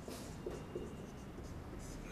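Marker pen writing on a whiteboard: a few short, faint scratching strokes as a word is written.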